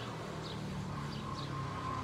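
A low, steady motor hum, with a few faint, short high chirps in the first second.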